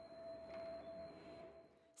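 Faint sustained ringing tone from the soundtrack, a single held note that dies away just before the end.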